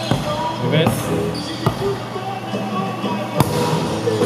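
A volleyball being served and played in a gym: several sharp slaps of hands on the ball, the loudest about three and a half seconds in, with voices and music in the background.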